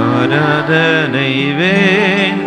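A man singing a Tamil Christian worship song into a microphone, his voice gliding and bending through a melodic run over sustained keyboard chords.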